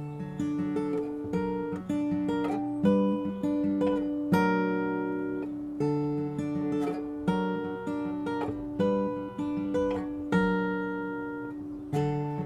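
Taylor steel-string acoustic guitar playing the instrumental intro, a picked chord pattern with a strong chord about every one and a half seconds and the notes left ringing between.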